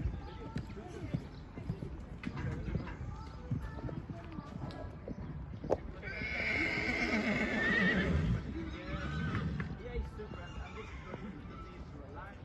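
A horse whinnying once, a call of about two and a half seconds that falls in pitch, over hoofbeats on the sand arena.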